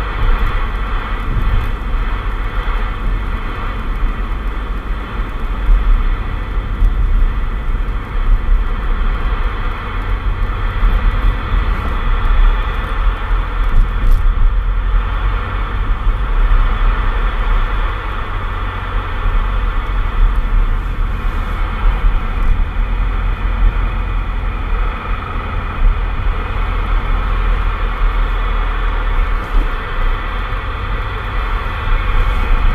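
Car driving at road speed, a steady low rumble of engine and tyres heard from inside the cabin, with an even hiss above it.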